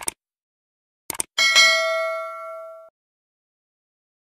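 Subscribe-button animation sound effect: two quick mouse clicks, two more about a second later, then a bright notification-bell ding that rings for about a second and a half and cuts off.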